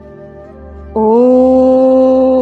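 A woman's voice chanting a long, steady "Om", beginning about a second in with a slight upward slide in pitch and then held on one note, much louder than the soft background music of held tones beneath it.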